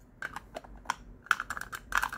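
Rapid light clicking and tapping from a jar of loose face powder being shaken and tapped to get powder out through its sifter. A few scattered clicks come first, then a quicker, denser run in the second half.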